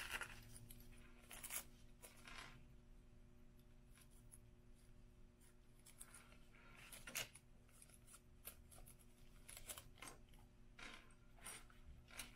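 Faint, scattered crinkling of a thin sheet of nail-art transfer foil being handled, with a few soft snips of small scissors cutting a piece off it.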